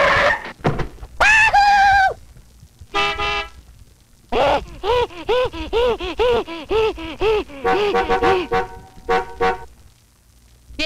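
Cartoon soundtrack of pitched, horn-like sound effects and music: a held tone about a second in, a short toot near three seconds, then a quick run of rising-and-falling notes, about three a second, followed by a stuttering held tone.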